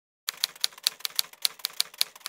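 Typewriter keystroke sound effect: a quick, even run of sharp key clacks, about five or six a second, starting about a quarter second in, as text is typed out letter by letter.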